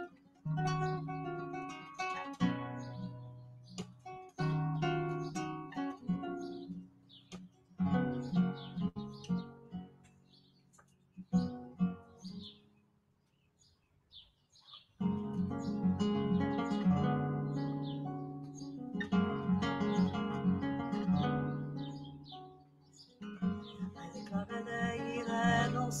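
Solo classical guitar playing an improvised flamenco passage of picked notes and strummed chords. It pauses almost to silence about halfway, then comes back with fuller strumming.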